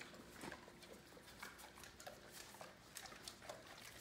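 Great Dane licking a stainless steel bowl clean: faint, irregular wet clicks of tongue and muzzle against the metal bowl.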